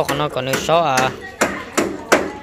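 A person talking, with several sharp knocks about every half second behind the voice, like hammer or chopping strikes.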